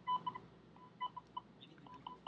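Morse code beacon from a HamShield Arduino transmitter heard through a small ICOM handheld radio's speaker: a string of short and long beeps at one steady pitch, spelling out part of the call-sign message "N7ICE Arduino HamShield".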